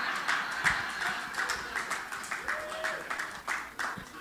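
A small congregation clapping in scattered, irregular claps, with a few voices calling out among them.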